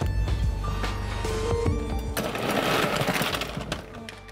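Ice cubes clattering as they are scooped with a metal scoop and tipped into a steel cocktail shaker tin, a dense rattling rush starting about halfway through and lasting under two seconds. Background music plays throughout.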